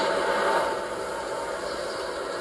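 Steady blizzard wind sound effect from an animated film soundtrack, heard through a television's speaker. A faint held note fades out in the first half second or so.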